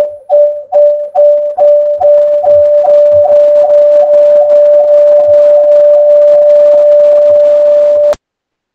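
Audio feedback loop in a video call: a loud, steady whistle-like howl at one pitch, pulsing about two to three times a second as the echo recirculates, then cutting off suddenly at the end.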